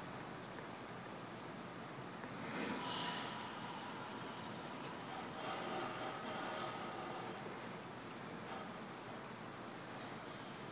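Quiet room tone with faint rustling and handling noise as a clamped workpiece is turned by hand against a dial test indicator. A brief soft hissing scrape comes about three seconds in.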